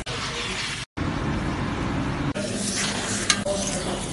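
Restaurant kitchen noise: a steady sizzling hiss of food cooking, which cuts out for a moment about a second in and shifts slightly in tone a little past halfway.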